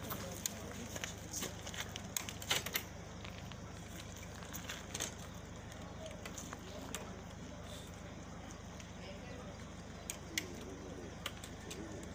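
Faint, indistinct voices over a steady low outdoor hum, with scattered sharp clicks and knocks, the loudest about two and a half seconds in.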